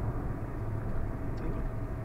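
Steady low engine and road rumble heard from inside a moving car's cabin.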